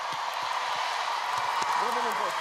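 Studio audience applauding and cheering as the song ends: a steady wash of clapping and crowd noise, with a brief voice near the end.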